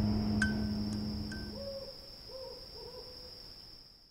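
Fading end-of-video sound design: a low rumble dies away in the first two seconds, with a few short clicks. Then several soft hoot-like calls sound over a steady high-pitched whine, and everything fades toward silence.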